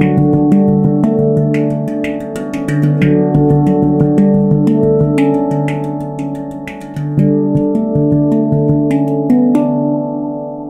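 Avalon Instruments handpan in the D Ashakiran scale, played with the fingers in a fast, flowing run of notes, several strikes a second, each ringing on so the tones overlap. Near the end the striking stops and the last notes ring out.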